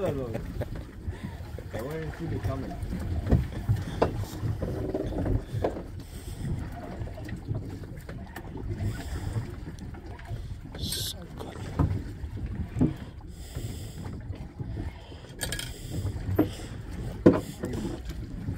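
Wind buffeting the microphone and a steady low rumble of sea and hull noise on a small boat, with a few short knocks and faint voices.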